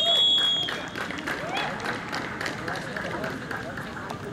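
A short, steady, high whistle blast right at the start, the loudest sound here, typical of a referee's whistle after a shot at goal, followed by players' voices calling and shouting on the pitch.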